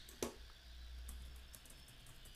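Faint typing on a computer keyboard: a soft sound just after the start, then a short run of light key clicks about a second in, over a low steady hum.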